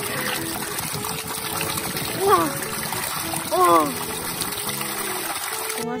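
Spring water pouring into a basin and splashing steadily as a cloth is dunked and squeezed in it. Two short voice exclamations come about two and three and a half seconds in.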